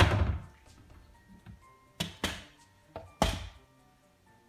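Wooden cupboard doors being shut, four thuds: a loud one at the start, two close together about two seconds in, and one more about a second later. Faint background music runs underneath.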